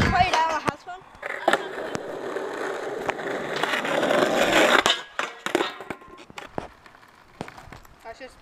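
Skateboard wheels rolling on an asphalt street, the rumble growing louder for a few seconds as the board comes closer, then cutting off about five seconds in. A few sharp clacks follow.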